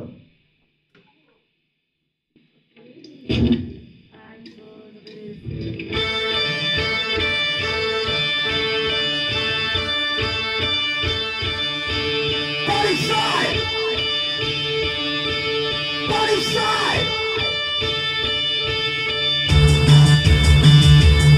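Live electro-punk song starting: after a short pause and a single loud hit, a repeating synthesizer and drum-machine pattern begins about six seconds in, with electric guitar sliding over it, and the full band comes in louder near the end.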